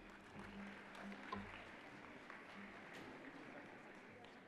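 Faint, scattered clapping from an audience in a large hall, slowly dying away.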